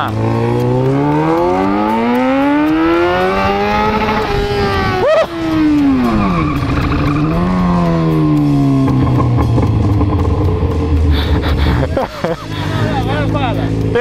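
Yamaha XJ6's 600 cc inline-four engine revving hard with a steadily rising pitch for about four seconds as the motorcycle accelerates in first gear. The sound breaks off sharply about five seconds in, dips and rises again, then settles into a low, steady run as the bike slows down.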